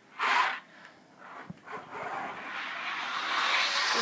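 A short rushing burst near the start, then from about halfway a rising whirring rush of a slot car running on its plastic track, growing louder.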